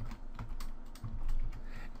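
A few scattered keystrokes on a computer keyboard: typing, softer than the surrounding speech.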